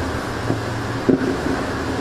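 A steady low hum with hiss behind it, typical of a microphone and sound system left open between speakers.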